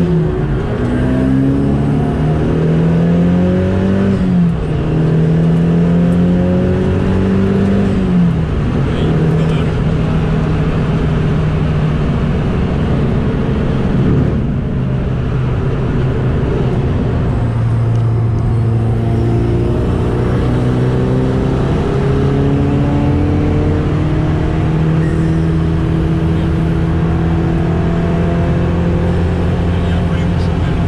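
The Dallara Stradale's turbocharged Ford EcoBoost four-cylinder, heard from inside the cockpit, pulls up through the revs with gear upshifts about four and eight seconds in. It then holds a steadier pitch and builds again gently through the second half.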